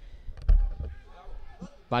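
A single low, dull thump about half a second in, followed by faint distant voices.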